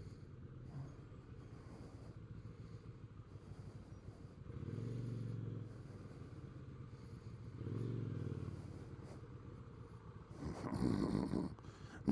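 Kawasaki VN800 V-twin engine running low and steady at idle and low speed, rising twice in short gentle throttle openings. A louder, muffled sound comes in near the end.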